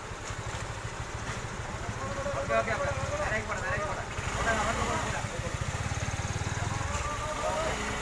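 A vehicle engine idling with a steady low throb, while people's voices call out over it.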